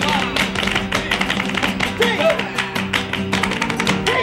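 Flamenco music: guitar playing under rapid, sharp percussive strokes from a dancer's shoe taps (zapateado) and hand clapping (palmas).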